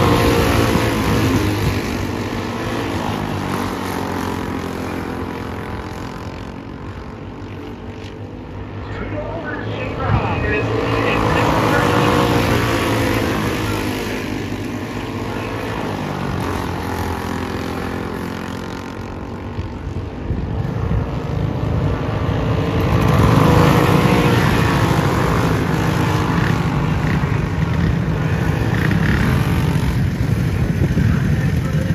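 Racing go-kart engines running as a pack laps the oval, the engine notes rising and falling in pitch and swelling each time the karts come past, loudest about ten seconds in and again from about twenty-two seconds.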